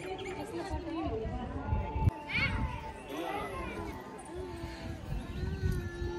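Background voices of people talking, with a brief high rising call about two seconds in and a held voiced tone near the end.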